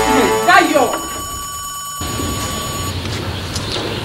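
A person's voice with gliding pitch during the first second, over a steady background tone. From about two seconds in, a steady low rumble-like noise follows.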